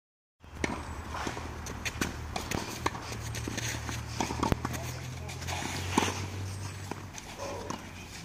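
Tennis ball knocks on a clay court: rackets striking the ball and the ball bouncing, a sharp knock every second or so, with footsteps on the clay, over a low steady hum.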